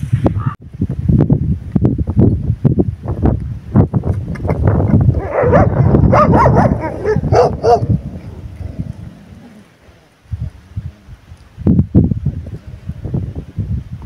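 Several stray dogs barking on and off in a confrontation. The barking is heaviest in the middle and dies away about ten seconds in before starting up again.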